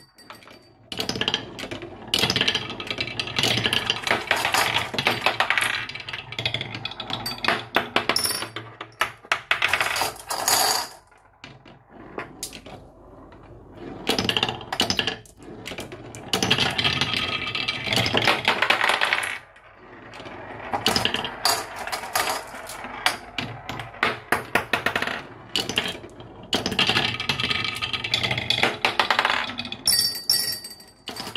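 Glass marbles rolling and clattering down a wooden marble run, a dense stream of clicks and knocks as they hit the wooden tracks, blocks and each other. The clatter comes in several waves with short quieter lulls between them.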